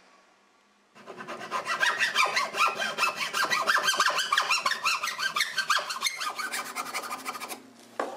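Hand saw cutting through a block of hickory in fast, steady strokes, starting about a second in and stopping shortly before the end.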